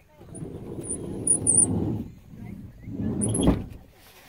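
Car power window motor running as the side glass moves, in two runs with a faint high whine; the second run ends in a knock as the glass stops.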